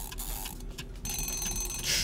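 Kitchen-timer style bell sound effect: a high, bright ring starting about a second in and lasting about a second, marking the end of the baking time, followed by a short hiss.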